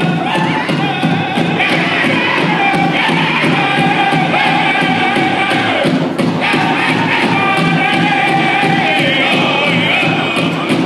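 Powwow drum group singing a fast song for the fancy shawl dance: several voices chant in high, held notes over a steady, evenly struck big drum. The singing breaks off briefly about six seconds in, then goes on.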